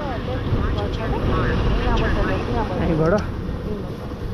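Motorcycle riding noise: a steady low rumble of engine and wind on the move, with faint, indistinct talking over it.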